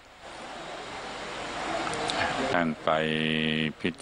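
A rushing noise swells for about two and a half seconds. Then a monk's voice speaks Thai into the microphone, holding one long drawn-out syllable.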